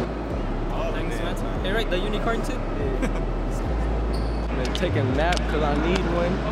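Indistinct voices talking over background music with a deep bass line that steps from note to note, with a few sharp knocks scattered through.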